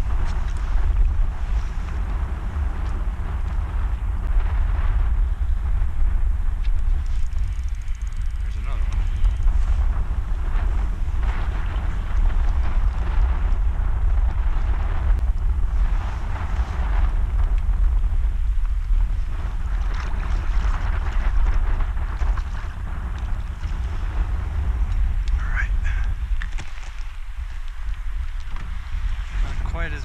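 Wind buffeting the microphone in a steady deep rumble, over choppy lake water splashing around a kayak.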